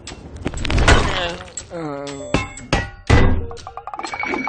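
Cartoon sound effects: a wordless voice making drawn-out vocal sounds, broken by several heavy thunks.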